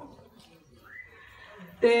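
A woman singing unaccompanied into a microphone pauses between sung lines; a faint short rising tone sounds about a second in. Her voice comes back loudly on the next line near the end.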